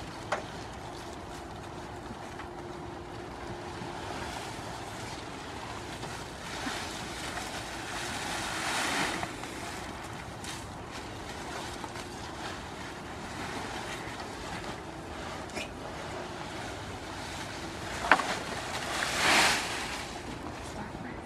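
Leafy branches rustling as goats browse through a heap of them, over steady wind noise on the microphone. The rustling swells about halfway through and again near the end, with a sharp click just before the last swell.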